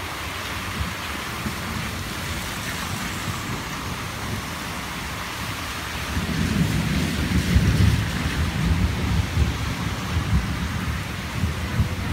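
Steady rain falling on foliage and the ground. From about six seconds in, a louder low rumbling joins it and carries on.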